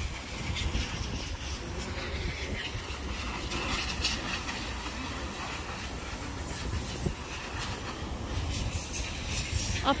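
Low steady rumble of wind buffeting a phone's microphone, with faint voices in the distance.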